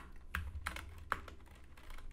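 Typing on a computer keyboard: about five separate keystrokes, irregularly spaced.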